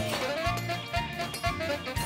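Background cartoon music with a steady beat, about two beats a second.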